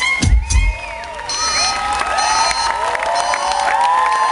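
Dance music with a heavy bass beat stops about a second in, and a large crowd cheers and whoops.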